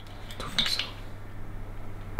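Faint clinks and handling noise from a square glass whiskey bottle with a pour spout, mostly about half a second in, as it is picked up and raised to the mouth for a sip. A low steady hum runs underneath.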